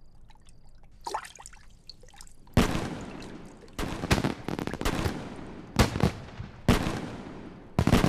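Faint watery plinks and trickles, then, from about two and a half seconds in, a string of about six sharp fireworks bangs, each trailing off in a crackling tail.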